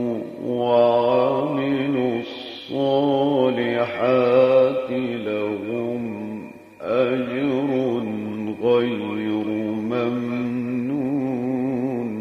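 A man reciting the Quran in the melodic mujawwad style, holding long ornamented notes with a wavering vibrato. He sings four long phrases, with short pauses for breath between them.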